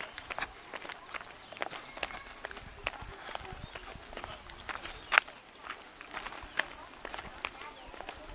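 Footsteps of a person walking on a paved path: short, irregular clicks a few times a second, with one sharper knock about five seconds in.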